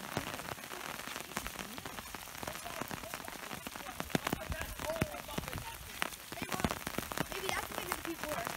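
Steady rain, with many sharp drop hits on an umbrella overhead over an even hiss.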